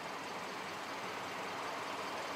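Steady, even background noise inside a car's cabin, the car idling.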